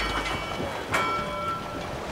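Metal bell on a red navigation buoy struck twice, about a second apart, each strike ringing on with several tones as the buoy rocks in the swell, over the wash of waves and wind.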